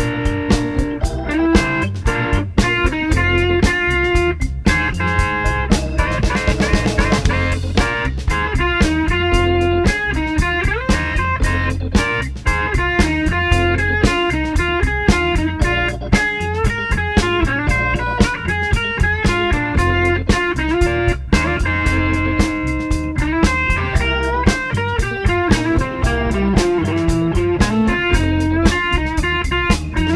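Modern electric blues band playing an instrumental break: electric guitar lead lines over a steady drum kit beat.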